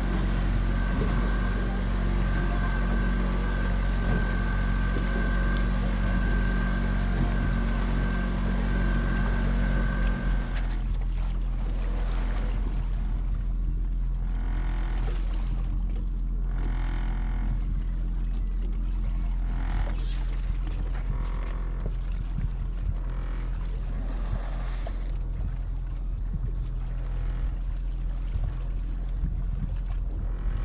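Honda 225 outboard motor running steadily with a boat moving through the water. About ten seconds in the sound changes abruptly: the hiss drops away, leaving a low steady engine hum under intermittent washes of water.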